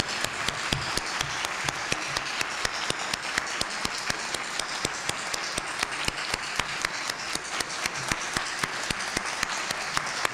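An audience applauding: steady, dense clapping of many hands that keeps going without a break.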